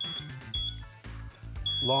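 Electronic buzzer in a homemade clothes-peg Morse code circuit giving high-pitched beeps as the peg switch is pressed: a short beep at the start, another about half a second in, and a longer beep near the end, keyed as the SOS signal.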